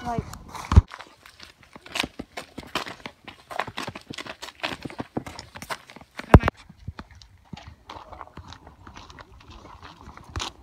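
Footsteps of a person walking in running shoes on a gravel and dirt path: a quick, uneven series of steps, with two louder knocks, one under a second in and one about six seconds in.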